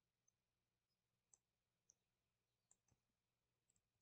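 Near silence, with a few very faint computer mouse clicks scattered through it.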